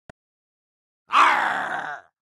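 A loud, voice-like groan that starts about a second in, falls slightly in pitch, and cuts off abruptly.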